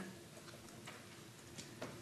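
Quiet room tone with a few faint, scattered clicks.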